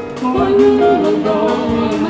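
Live sacred jazz music: a woman's voice singing held, gliding notes over orchestra and jazz-band accompaniment.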